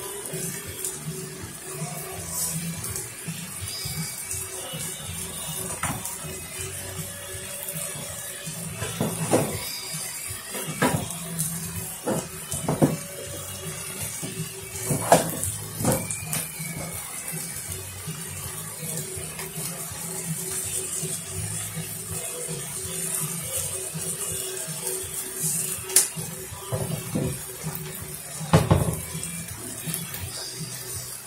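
Beef strips and onions sizzling in a frying pan, with a few sharp pops standing out, over music playing in the background.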